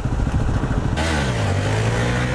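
Motorcycle engine running as a Honda CBR sportbike pulls away and lifts into a wheelie. Its note falls in pitch, then holds steady, and a rush of hiss comes in about a second in.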